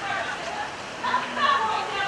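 Indistinct voices of people talking at a distance, over a steady background hiss.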